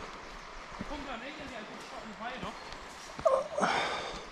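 Faint, indistinct voices, with a brief louder vocal sound a little after three seconds in.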